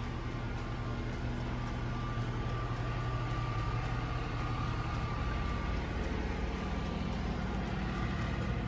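A steady low hum of room background noise, with a faint thin high tone for a few seconds in the middle.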